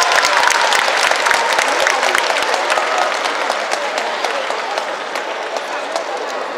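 Audience applauding: dense clapping that gradually thins out and grows quieter.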